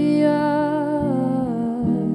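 A woman singing one long held note that drops lower near the end, over a clean electric guitar picking single notes.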